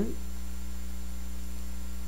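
Steady low mains hum, with a fainter high whine above it, in a pause between spoken sentences.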